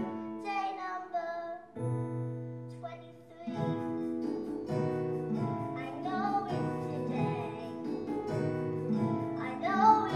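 A young girl's voice singing a musical-theatre ballad over instrumental accompaniment, with a brief lull on a held chord about two to three seconds in before the melody resumes.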